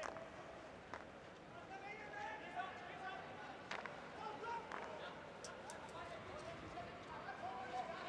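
Faint stadium crowd and player voices from the pitch during a field hockey match, with a few sharp clicks of hockey sticks hitting the ball: one at the start, one about a second in, and two more around four to five seconds.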